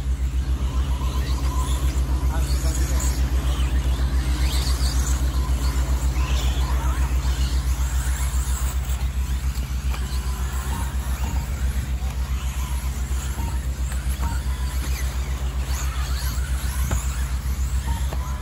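4WD RC buggies racing on a dirt track, their motors whining faintly up and down as they pass, over a loud low rumble that pulses several times a second.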